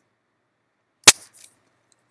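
A single sharp, loud click about a second in, with a fainter tick just after it: a key or button being pressed at the computer as a value is entered.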